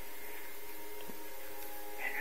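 Steady background hiss with a faint hum: room tone, with one faint tick about a second in.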